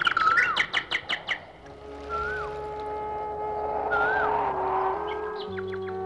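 Birdsong: a quick run of chirps in the first second and a half, then single swooping whistled calls about two and four seconds in, over soft background music with long held notes.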